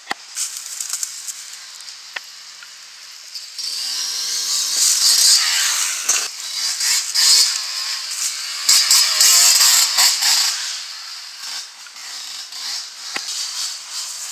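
Enduro dirt bike engine revving hard, pitch rising and falling with the throttle as the bike rides up close and then climbs away. It comes in about three and a half seconds in and is loudest around the middle, fading toward the end.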